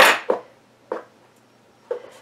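Steel fabric scissors set down with a short metallic clatter on a wooden table, followed by a small tap about a second later.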